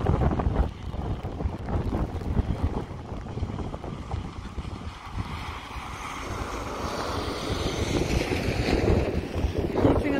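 Gusting wind buffeting the microphone, with the jet noise of a British Airways Airbus A320 on approach rising over the last few seconds.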